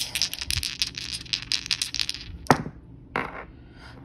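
A handful of plastic story cubes rattling and clicking together in a shaking hand, then thrown down: one sharp clack about two and a half seconds in and another just after three seconds as they land.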